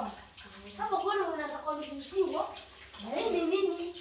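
Children's voices calling out in high, drawn-out, sing-song sounds, a few phrases with pauses between them, in an echoing kitchen.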